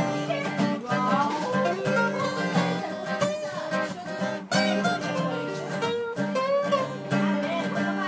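Two steel-string acoustic guitars played together as a duet, with some notes bending in pitch.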